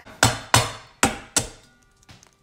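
A raw egg knocked four times against the rim of a stainless steel mixing bowl to crack its shell. Each knock is sharp, with a short metallic ring.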